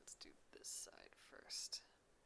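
Faint whispering under the breath, with two short hissing sibilants, one just before the middle and one near the end.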